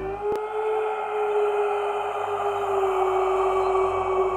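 Ambient background music: one long held drone note that sinks slightly in pitch over a soft wash of sound, with a single click just after the start.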